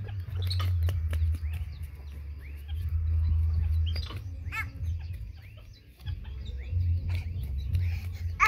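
Chickens clucking now and then in the background over a low rumble on the microphone that swells and fades.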